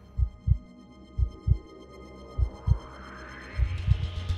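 Heartbeat sound effect: four low double thumps, about 1.2 seconds apart, over a soft sustained music pad. A rising whoosh swells in during the last second and a half.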